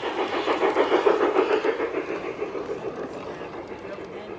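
LGB G scale model steam locomotive and its coach running past on garden track with a rapid clatter from the running gear, loudest about a second in and fading as the train moves away.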